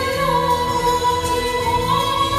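Music with a woman singing long, held notes over a backing track.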